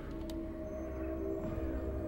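Background music: a single low note held steady over a low rumble.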